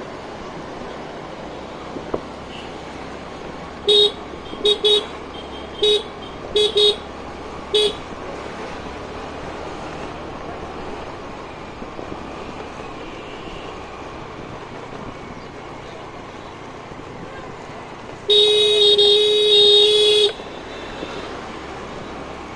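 Scooter's electric horn sounding, first in seven short toots between about four and eight seconds in, then one long blast of about two seconds near the end. Under it is the steady running of the scooter and street traffic noise.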